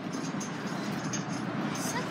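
Handling noise from a hand-held phone microphone: scratchy rustles over a steady rushing noise as the phone is carried and swung about.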